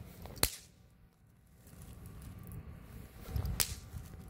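Two Comet Teufelstanz bang snaps (Knallerbsen) thrown down one at a time, each giving a single sharp crack on impact: one about half a second in, the other about three seconds later.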